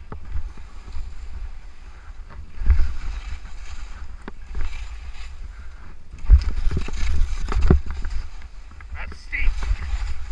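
Skis scraping and skidding on firm snow during a fast downhill run, with wind rumbling on the microphone throughout. The scraping swells about three seconds in and again for a couple of seconds from about six seconds in.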